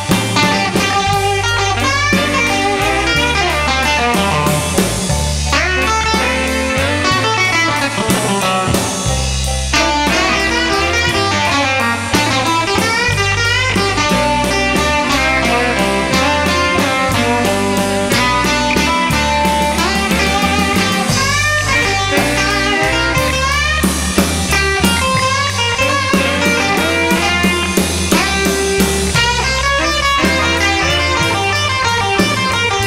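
Electric blues band playing an instrumental break: an electric guitar lead with many bent notes over bass guitar and drum kit.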